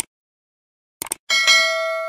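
Subscribe-button sound effect: a mouse click at the start, a quick double click about a second in, then a bright notification-bell ding that rings on and fades away.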